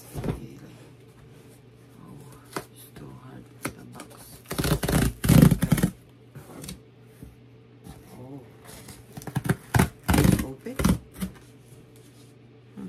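Cardboard box and packing material being handled and pulled out: rustling, scraping and crinkling with scattered clicks, loudest in two stretches, one about halfway through and one about two-thirds of the way in.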